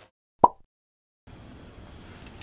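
A single short, bright plop, an edited pop sound effect set in dead silence. It is followed about a second later by faint room noise.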